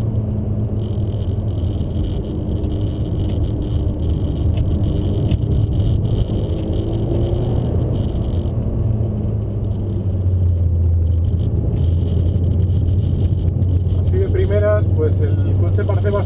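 Engine of a Peugeot RCZ R, a turbocharged 1.6-litre four-cylinder, heard from inside the cabin. It runs with a steady low drone under light load at a moderate reconnaissance-lap pace. A voice comes in near the end.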